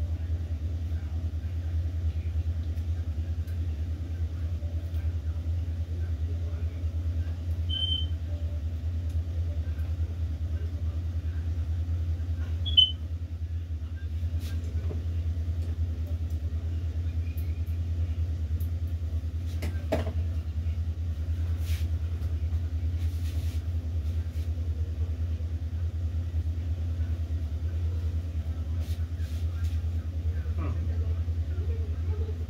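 Steady low hum from the room, with faint rustling and handling noises and one sharp knock about thirteen seconds in.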